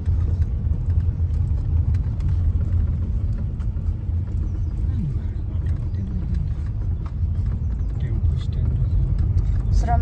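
Road vehicle driving along a road: steady low engine and road rumble throughout, with a brief falling whine about halfway through.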